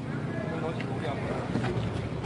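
Busy city street background: steady traffic noise with indistinct voices of people nearby.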